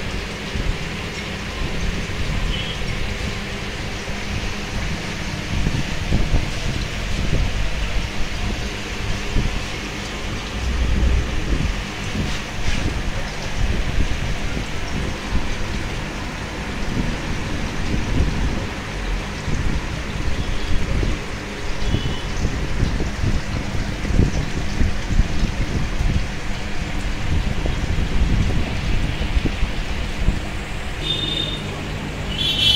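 Steady bubbling and splashing of aquarium aeration, with a low rumble underneath.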